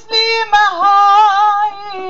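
A woman singing long held notes, the longest lasting about a second, with a softer held note after it, as part of a song.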